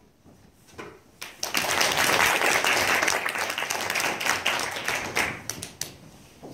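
Audience applauding. It starts about a second and a half in, holds steady, and thins to a few separate claps before dying away near the end.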